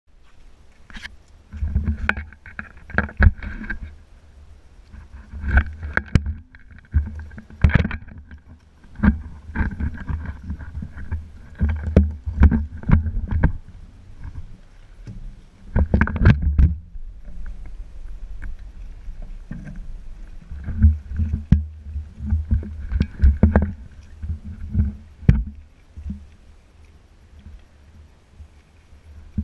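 Wind gusting on a handheld action camera's microphone, coming in irregular rumbling bursts of a second or two, with sharp knocks and clicks from the camera being handled.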